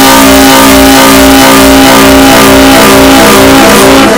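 Heavily distorted, clipped, effects-processed audio at full loudness: a dense wall of many held tones that shift in pitch in steps, buried in harsh hiss, like music put through repeated distortion effects.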